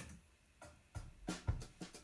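A short click, then a backing-track drum beat starts about a second in, with regular kick-drum thuds and sharper snare and hi-hat hits.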